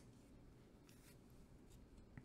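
Near silence, with a few faint, short taps and rubs of a sleeved trading card being set down on a stack of sleeved cards on a cloth playmat.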